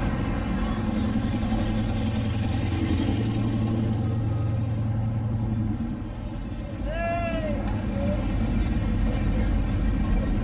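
Engines of classic cars on big rims running at low speed as they cruise past, a steady low hum, with crowd voices around. About seven seconds in, a voice gives a short rising-then-falling shout.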